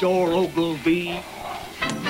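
A man's voice making short wordless exclamations, with one sharp crack near the end.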